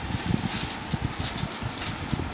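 Plastic-wrapped clothing packets being handled: irregular soft knocks and light crinkling of the plastic.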